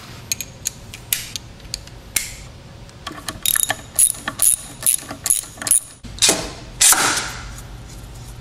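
Hand ratchet wrench with a socket on an extension clicking as it drives a fastener into a drilled hole in a wooden board: a few scattered clicks at first, then a quick run of clicks about three seconds in. Two longer rasping sounds follow near the end.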